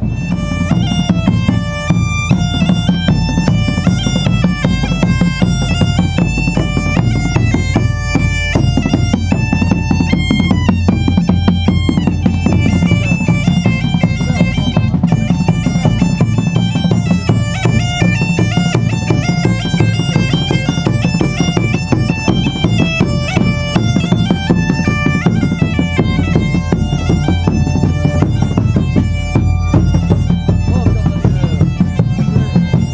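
Bagpipe playing a melody of stepped notes over its steady drone, with a large drum beating alongside.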